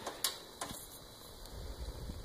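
Three light clicks in the first second as alligator-clip test leads are clipped onto a wire, then a low rumble of handling noise.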